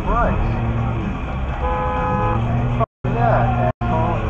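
A car horn beeps once, a steady tone lasting just under a second, over constant road rumble from a moving car. The sound cuts out completely twice, briefly, near the end.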